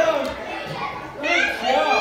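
Children's voices shouting and chattering over one another, with a louder burst of high-pitched voices about a second and a half in.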